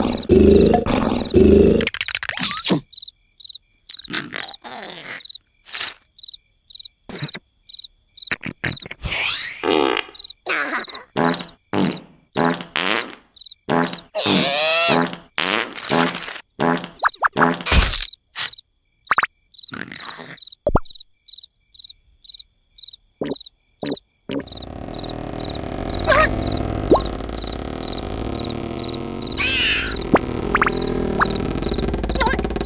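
Cartoon sound effects: a run of short squeaks, buzzes and sweeping comic noises over a steady, evenly pulsing high cricket chirp. Near the end a continuous low rushing sound takes over.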